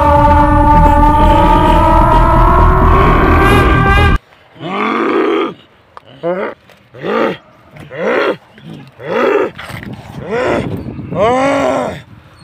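A loud dramatic music sting with a deep rumble, cut off abruptly about four seconds in. Then a man's voice gives a string of about eight short, separate roars, each rising and falling in pitch.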